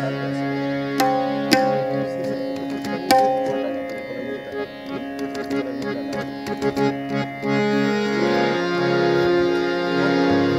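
Instrumental opening of a song: a harmonium holds sustained reedy chords, with a few sharp tabla strokes in the first three seconds. The harmonium chords swell louder about three quarters of the way through.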